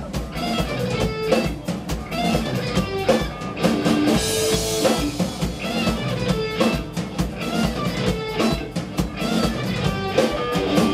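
Live rock band playing an instrumental passage: distorted electric guitar over a drum kit keeping a steady beat, with a cymbal wash about four seconds in.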